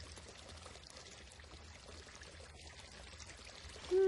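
Faint, steady flow of a stream trickling.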